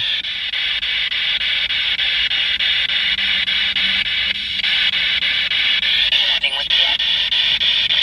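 Spirit box sweeping through radio stations: a steady static hiss chopped several times a second, with a brief fragment of a voice coming through near the end.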